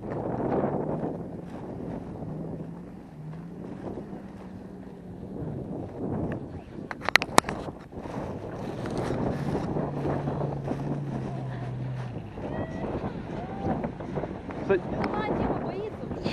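Off-road 4x4's engine running, a steady low hum that steps up and down in pitch a little, with wind noise on the microphone. A few sharp clicks about seven seconds in.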